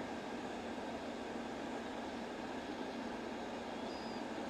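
Steady background hiss with no distinct events: room tone or recording noise.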